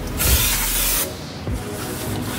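Aerosol spray can giving one hissing burst of just under a second at a car's steering knuckle, then cutting off suddenly, over faint background music.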